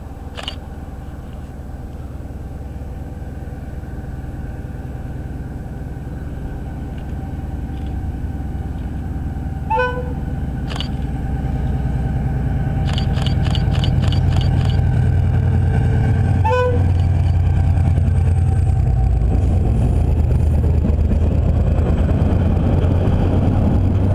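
Irish Rail GM 071-class diesel locomotive (EMD 645 two-stroke engine) drawing near and passing close by, its engine rumble growing louder about halfway through and staying heavy as the wagons roll past. Two short toots come about ten and sixteen seconds in, with a quick run of clicks between them.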